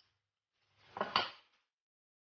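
Brief scrape and rattle of a kitchen knife being picked up and handled on a granite countertop, ending in two quick sharp knocks about a second in.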